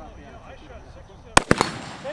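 Two quick rifle shots about one and a half seconds in, a fraction of a second apart, each sharp and loud with a short echo, over faint talking among the onlookers.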